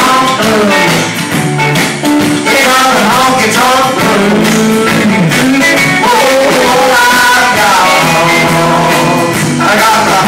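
Live band playing country-flavoured rock and roll: electric and acoustic guitars with drums, and a man singing.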